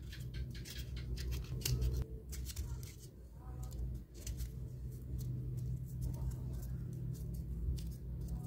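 Small plastic parts being handled: a plastic gear and hub pressed and turned inside a foam tyre ring, giving irregular light clicks and scrapes over a steady low hum.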